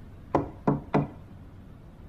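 Knuckles knocking three times on an apartment door, quickly one after another.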